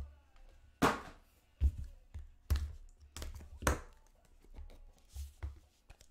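Small cardboard trading-card boxes being set down and pushed across a tabletop: several separate dull thuds and taps, the loudest in the first four seconds, a couple of lighter ones later.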